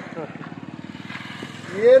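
A motorcycle passing close by on the road, its engine running steadily at low speed. A man's voice cuts in near the end.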